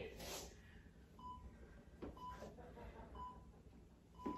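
Near silence broken by faint, short electronic beeps about once a second from an interval timer, counting down the last seconds of a 30-second exercise interval.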